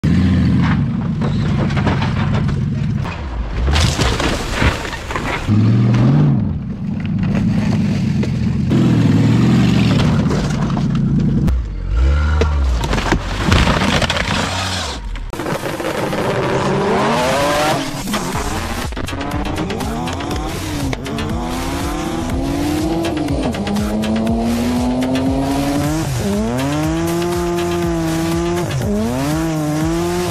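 A car doing donuts: tires squealing and the engine revving high, its pitch rising and falling over and over with the throttle through the second half. The first half is a denser, noisier stretch of engine and tire noise.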